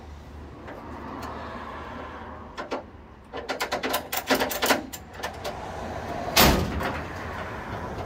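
Quick metallic clicks and clanks as a car's wheel strap is worked and tightened on a car-transporter's steel deck, with one loud clank near the end. A low engine hum runs underneath.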